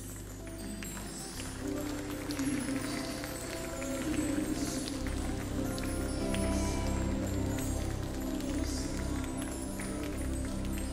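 Instrumental worship music: held chords over a steady bass line with light percussion, swelling a little louder after the first couple of seconds.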